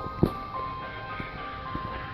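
Music: a melody of held tones stepping from note to note, with scattered sharp clicks.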